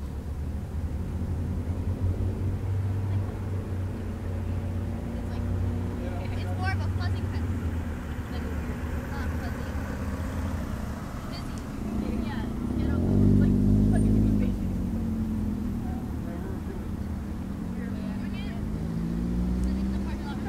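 Low, steady engine hum of a motor vehicle. It swells louder and rises in pitch a little past halfway, then eases off and falls again. Faint distant voices can be heard under it.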